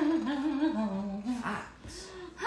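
A person humming a short wordless tune, the melody wavering and stepping downward over about a second and a half before trailing off.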